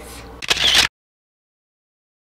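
A brief, loud rustle about half a second in, lasting under half a second, then dead silence from an edit cut.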